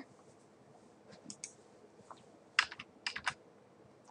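Computer keyboard keystrokes while editing code: a couple of isolated taps about a second in, then a quicker cluster of about five keypresses in the second half.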